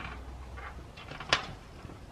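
Rubber fat-bike tire being worked onto its wheel rim by hand: quiet handling sounds with one sharp click a little over a second in.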